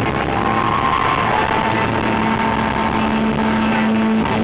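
Live rock band playing loudly with electric guitars and drums, distorted and muddy on a camera microphone. A high guitar note is held and bends slightly, and a steady low note comes in during the second half.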